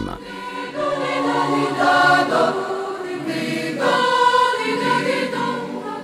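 Choral music: a choir singing long held notes, the chord shifting every second or two.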